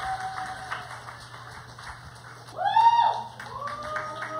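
An audience applauding, dense steady clapping, over background music with sustained tones. About two and a half seconds in, a loud swooping sound rises and falls in pitch.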